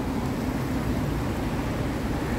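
Steady rushing of sea surf breaking and washing against a stone seawall, with a low rumble underneath.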